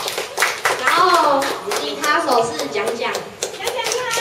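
A small group clapping in scattered claps, with voices calling out and talking over it.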